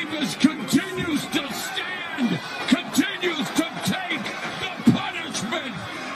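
Arena voices yelling and shouting without clear words during a close-range exchange of punches, scattered with sharp smacks that fit gloves landing.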